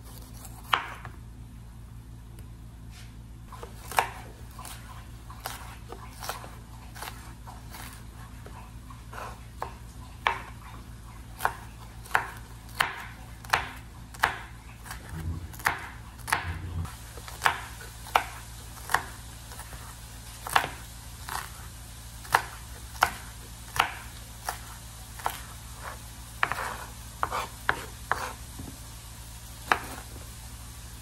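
Chef's knife chopping bell pepper on a wooden cutting board: irregular sharp knocks of the blade striking the board, sparse at first and coming about twice a second in the second half. A steady low hum runs underneath.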